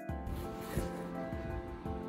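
Background music with a steady beat and sustained synth-like tones.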